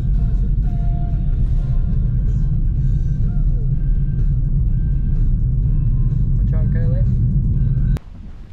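Steady low rumble of a car driving slowly along a rough single-track road, heard from inside the car.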